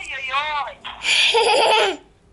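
A toddler girl laughing and squealing: a few high, wavering vocal sounds, then a louder, shrill laugh from about a second in that stops just before the end.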